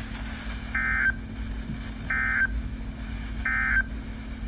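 Three short bursts of digital data screech from a Midland NOAA weather radio's speaker, evenly spaced about a second and a half apart: the SAME end-of-message code that closes the weekly test broadcast. A steady low hum and hiss from the radio sit underneath.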